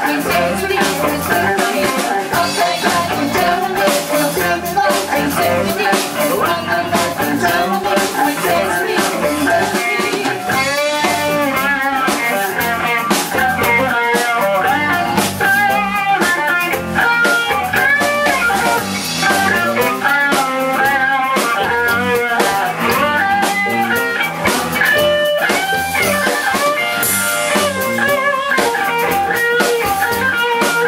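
A live band with drums playing, led by an electric guitar solo full of bent notes that comes to the fore from about ten seconds in.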